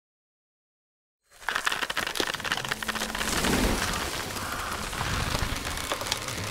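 Silence for about a second, then a dense, steady crackling patter starts abruptly and runs on at an even level.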